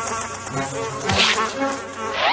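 Cartoon sound effect of a housefly buzzing steadily, with a short rushing noise about a second in.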